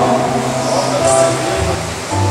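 Live acoustic band music between sung lines: acoustic guitar over held low bass notes, with the bass note changing about one and a half seconds in.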